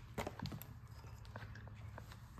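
Faint handling noises from a clone Garrett GT3076-style turbocharger being set down and turned by hand on a stool seat: a few light knocks and scrapes, most of them in the first second, over a low steady hum.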